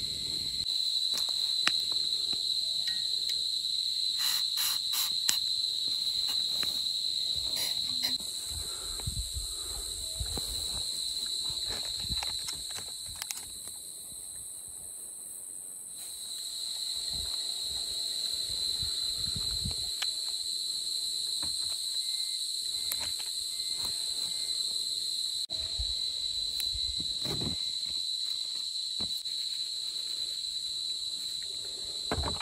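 Steady high-pitched insect chorus that drops out briefly near the middle, with occasional low knocks and handling noises.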